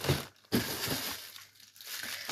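Packaging crinkling and rustling as packs of raw dog food are handled and lifted out of a cardboard box: a short rustle, then a longer one about half a second in.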